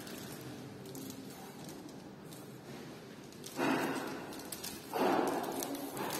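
Faint room tone, then two short breathy rushes of noise about a second and a half apart near the end.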